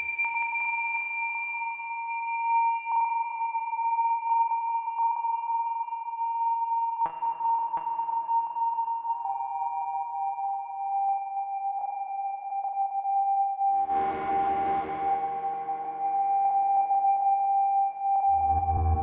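Eurorack modular synthesizer (Doepfer A-100 analog modules through a Make Noise Mimeophon delay) holding pure, steady high tones that step down in pitch about halfway through, with a couple of clicks just before. A brighter, fuller note comes in near the end and fades.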